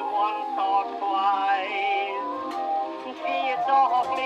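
Music from a 1913 acoustic-era phonograph recording of a popular song, thin and tinny with almost no bass or treble. It is a run of notes with a wavering, vibrato-rich pitch.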